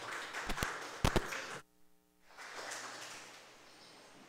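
A few sharp knocks or taps, the loudest pair just after a second in, over a faint hiss of room noise. The sound then cuts out almost completely for a moment, as at a video edit, and faint room tone returns.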